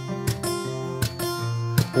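Acoustic guitar strummed in a steady rhythm, its chords ringing on between strokes.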